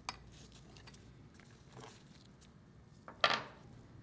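Light metallic clinks and ticks of a wrench working the steel bolts on a treater valve's housing flange. There is a sharp click at the very start and a louder clink a little after three seconds in.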